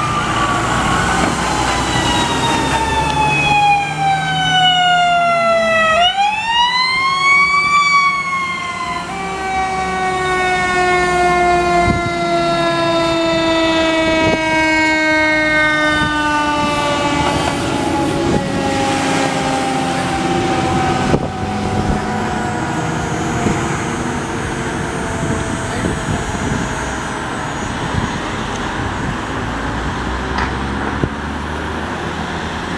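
Fire truck sirens wailing over the rumble of the trucks' engines as the trucks pass. The pitch falls slowly, sweeps back up about six seconds in, then slides slowly down again over the next fifteen or so seconds as the siren fades.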